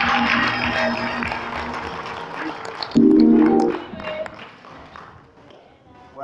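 Live church band music with congregation applause, a loud sustained chord about three seconds in, then dying away to quiet.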